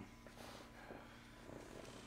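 Near silence with a faint, steady low hum.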